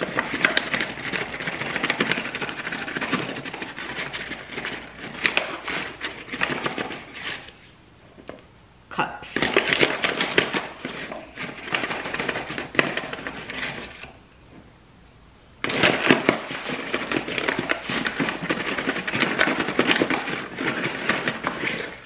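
Flour being scooped out of a paper flour bag and tipped into a glass bowl: crinkling of the paper bag and scraping of the scoop in the flour, in rapid clicky bursts, with two short pauses.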